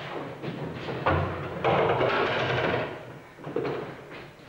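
A large wooden box prop handled on a stage floor: a wooden knock about a second in, then a loud scraping rumble of about a second that fades away.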